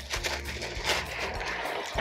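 Small clay potting granules (Seramis) scooped and poured with a small plastic cup, a continuous gritty trickle of many tiny ticks.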